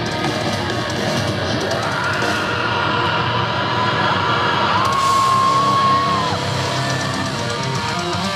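Rock band playing live with distorted electric guitars and drums. A long high note is held about five seconds in.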